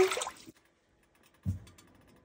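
Water poured from a plastic measuring cup splashing into a stainless steel saucepan, fading out within about half a second. A single dull knock follows about a second and a half in.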